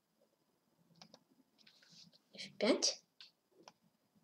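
Sharp clicks as moves are played in a fast online chess game: a pair about a second in and a couple more near the end. A short spoken word, the loudest sound, comes about two and a half seconds in.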